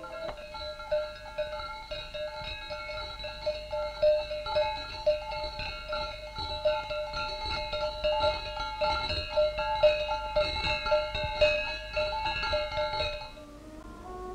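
Camel bells clanking over and over at a walking pace, several pitches ringing together, stopping shortly before the end.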